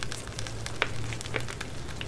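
Soft crackly rustling and scattered light ticks of small paper flake stickers being picked over and shuffled between fingers in an open palm, over a low steady hum that fades out about three-quarters of the way through.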